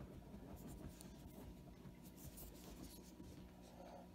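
Near silence: faint room hum with a few soft scratchy handling sounds, fingers on a plastic lipstick tube.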